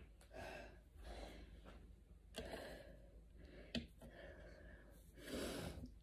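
A woman breathing hard, catching her breath after a set of exercises: a series of audible breaths about a second apart, the strongest near the end. A single short click about two-thirds of the way through.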